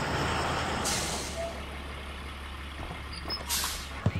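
School bus engine idling with a steady low hum, its air brakes hissing twice: once about a second in and again near the end.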